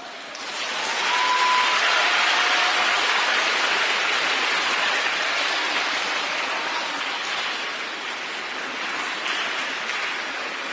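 Audience applauding, swelling within the first second and then slowly thinning out.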